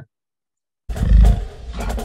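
Dead silence for about a second, then a loud, deep animal-roar sound effect opening a music sting, with drum hits starting near the end.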